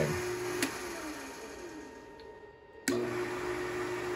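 Lathe's treadmill DC motor switched off about half a second in, its hum falling in pitch as it coasts down almost to quiet, then starting again suddenly near the end with a steady hum. The direction switch is being moved through its center-off position so the spindle can stop before it is reversed.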